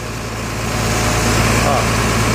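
Truck engine running steadily, powering the hydraulic crane as it is worked from its control levers; the running noise grows a little louder about half a second in.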